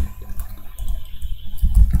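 Computer keyboard typing: a few irregular keystrokes.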